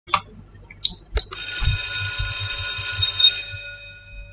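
A bright, bell-like ringing of many steady high tones starts about a second in, after a few short blips, with soft low pulses beneath it. It fades out near the end.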